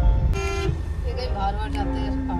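A vehicle horn gives one short toot about a third of a second in, over the steady low rumble of a car moving in traffic, heard from inside the cabin.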